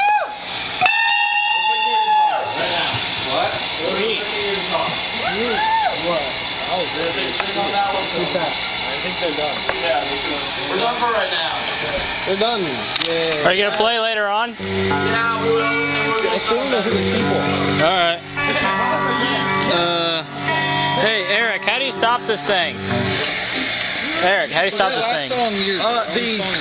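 Amplified rock band playing in a garage: electric guitar notes bending and wavering through the first half, then from about halfway held chords over bass notes that change every second or so.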